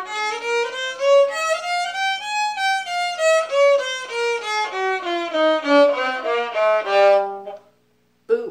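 Solo violin being bowed, playing a run of notes that climbs in pitch over the first couple of seconds and then works its way back down, ending on a held note shortly before the end.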